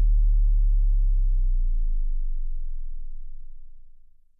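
Deep electronic bass note ending a DJ remix track, held and sliding slightly down in pitch as it fades out, gone just after the end.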